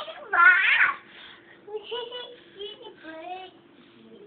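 A young child's high-pitched, cat-like squealing, loudest and longest about a third of a second in, followed by a few shorter, quieter sing-song vocal sounds.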